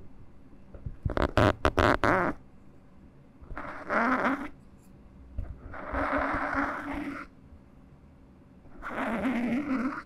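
Close-miked ASMR trigger sounds from small objects worked against foam microphone windscreens. A quick run of sharp taps comes about a second in, then three rasping, rumbly swells of a second or so each.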